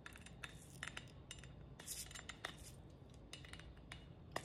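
Light, scattered clicks and taps of a plastic cap being worked at on a brand-new seasoning shaker whose top is hard to get off.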